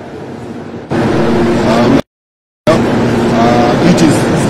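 Steady machinery hum with a low drone, which jumps much louder about a second in and cuts out to dead silence for about half a second in the middle before returning.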